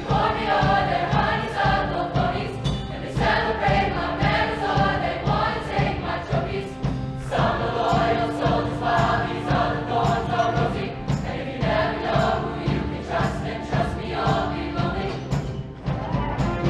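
Mixed show choir of girls and boys singing together over instrumental accompaniment with a steady beat.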